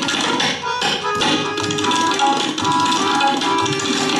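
Solo tabla played in a fast, dense run of strokes on the dayan and bayan, with a harmonium holding a repeating melody of sustained reed notes underneath as accompaniment.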